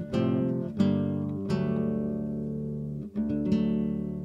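Background music: acoustic guitar chords strummed and left to ring, a few strums with pauses between them.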